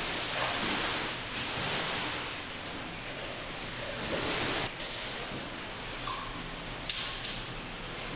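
Steady rush of running water in a cave, with two sharp knocks close together near the end.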